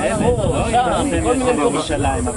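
Speech only: people in a group talking, voices overlapping, over a steady high hiss.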